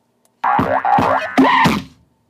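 Cartoon sound effects of an animated logo intro, played through a computer's speakers: about four quick sliding-pitch springy sounds in a row, starting about half a second in.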